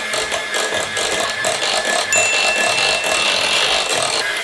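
Electric hand mixer running steadily, its beaters whipping a bowl of soft mashed potatoes. A thin high whine joins about halfway through.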